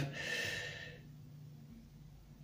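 A soft, hissy breath out that fades away within about a second, followed by faint room tone.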